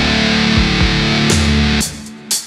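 Heavy rock instrumental passage led by a distorted Ibanez electric guitar, played with the full band. Near the end the band stops abruptly, leaving a short fading ring.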